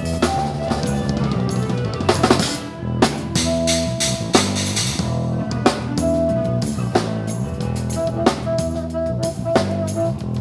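Live rock band playing an instrumental passage: drum kit with sharp snare hits about every second and a bit, bass, and electric guitar holding long sustained notes.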